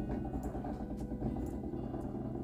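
Steady low hum from a powered-on embroidery machine at rest, with a few faint steady tones above it.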